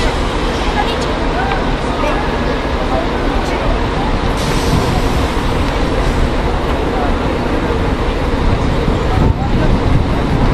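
Indistinct, distant voices of players and spectators at a rugby field over a steady low rumble of outdoor noise.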